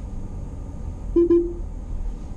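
Two quick electronic beeps from the car's in-cabin voice assistant about a second in, the second trailing off a little longer, the chime of the system taking a spoken request. Under them, the steady low rumble of the car's cabin while driving.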